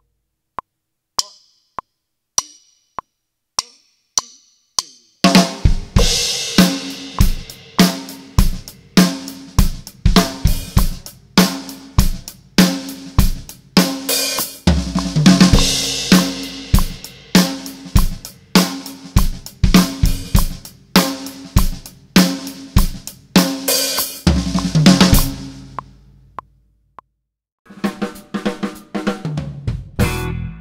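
Drum kit: a few seconds of sparse clicks about two a second, then a hi-hat, bass drum and snare groove broken by six-stroke-roll fills around the drums, with cymbal crashes ringing out near the middle and where the drumming stops. Other music starts near the end.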